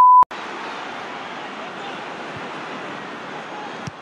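A television test-card tone, a steady high beep that cuts off with a click about a quarter second in, followed by a steady hiss of stadium crowd noise from a football broadcast.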